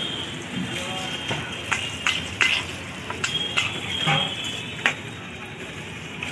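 Oil sizzling in a frying pan, with a string of sharp metal clinks and taps from a steel spatula and utensils.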